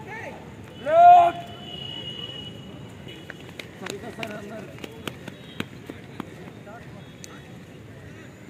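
A man's single loud shouted call, rising at its start and then held for about half a second, comes about a second in. Murmur from a group of people is heard behind it, with a few short sharp clicks afterwards.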